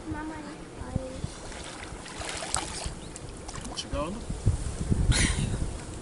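Lake water splashing and sloshing as a person is dunked under and lifted back up in a full-immersion baptism, loudest near the end, over a low wind rumble on the microphone.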